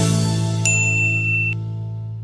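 Background music's last chord fading out, with a single high bell ding about two-thirds of a second in that rings for under a second and cuts off suddenly: a notification-bell sound effect for the subscribe button.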